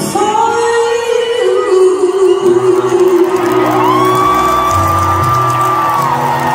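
A live band playing with a singer's lead vocal. About two-thirds of the way in, a voice slides up into a long held high note.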